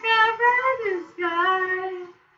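A man singing unaccompanied in a high register, holding two long notes: the first slides up and back down, then after a short breath the second is held steady.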